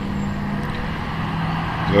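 Steady low mechanical hum, made of a few even low tones, from a running motor.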